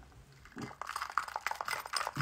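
Sipping a drink through a straw: a quiet run of quick, wet clicking mouth sounds of sucking and swallowing.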